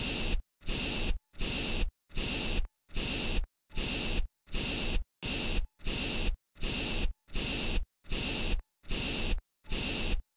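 Trigger spray bottle sound effect spraying over and over in short hissing squirts, about one and a half a second, each one starting and stopping sharply.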